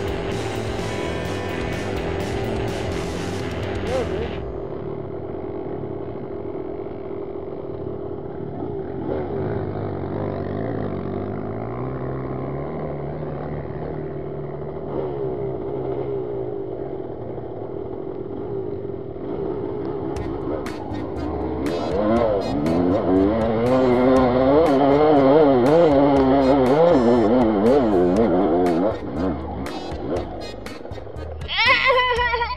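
Dirt-bike engine idling steadily, then revved hard and unevenly, its pitch rising and falling rapidly, for the last third as the bike climbs a steep grassy hill.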